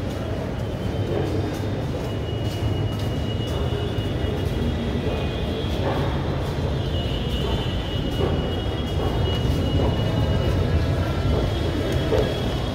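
Steady low rumble of an underground metro station concourse, with a faint high-pitched tone that comes and goes.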